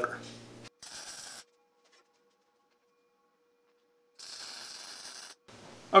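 Two short bursts of welding-arc crackle, tack welds on a steel clamp, with a dead-silent gap between them. The second burst lasts about twice as long as the first.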